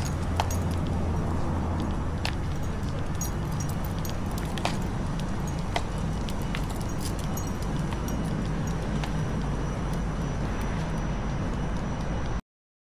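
Street ambience: a steady low rumble of city traffic, with scattered light clicks and small jingles over it.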